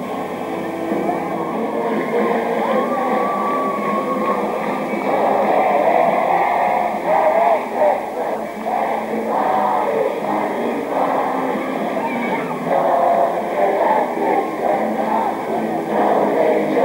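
Live music mixed with a crowd of many voices singing and shouting at once, steady and loud throughout. The sound is dull and muffled, as on an old videotape.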